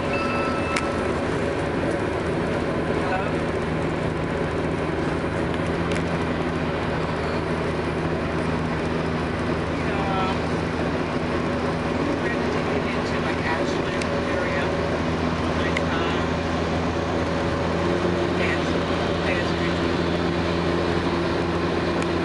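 Steady engine and road drone of a vehicle at highway speed, heard from inside the cabin as a constant low hum over tyre and wind noise.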